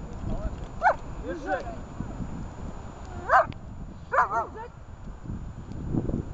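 A dog barking in short calls, about six in all: one a second in, two softer ones just after, a loud one at about three seconds and a quick double bark a second later. A low rumble of wind on the microphone runs underneath.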